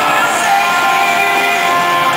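Live acoustic-guitar pop ballad with steady held sung notes, recorded from the audience, with crowd voices mixed in.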